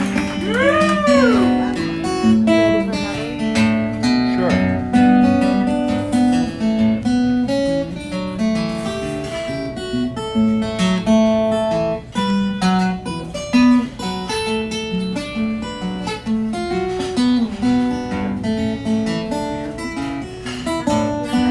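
Acoustic guitar played live in an instrumental break: quick runs of picked single notes over lower notes, with one note that swoops up and back down about a second in.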